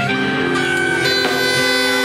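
Live band playing: electric guitar over drums, with long held notes from harmonium and reed instruments.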